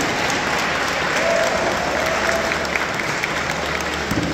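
Audience applauding steadily in a hall.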